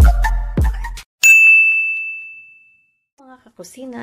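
Electronic dance music cuts off about a second in, followed by a single bright bell-like ding that rings out and fades over about a second and a half. A woman starts speaking near the end.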